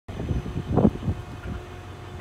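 Wind buffeting the microphone outdoors: uneven low rumbling gusts, the strongest near the middle.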